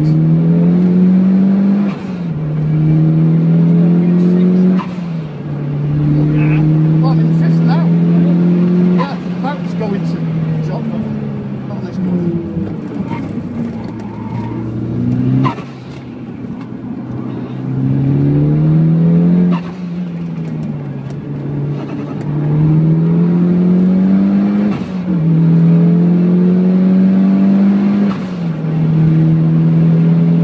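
Mitsubishi Lancer Evolution IX GT wagon's turbocharged four-cylinder heard from inside the cabin, revving up through the gears under hard acceleration with repeated quick upshifts that drop the pitch. In the middle it eases off and falls away for a corner, then pulls up through the gears again.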